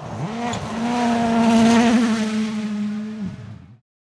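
Ford Puma Rally1 car's turbocharged four-cylinder engine held at high, steady revs as it drives past, swelling to a peak about halfway through and then fading out abruptly near the end.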